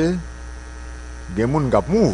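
Steady low electrical mains hum on the studio audio, heard plainly in a pause in a man's speech, which picks up again about two-thirds of the way through.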